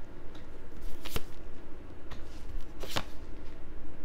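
Tarot cards being drawn and laid down on a table, with two sharp snaps as two cards are set down, about a second in and near three seconds, and softer card rustles between.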